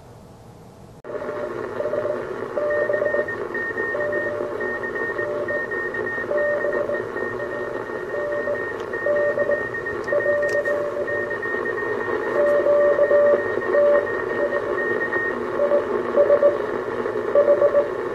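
Homebrew 40-metre direct-conversion CW receiver's audio, starting about a second in: a steady hiss of band noise with Morse code signals keyed on and off as beat tones, a stronger low tone and a fainter higher one.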